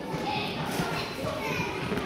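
Hubbub of many children's voices chattering at once, with no single voice standing out.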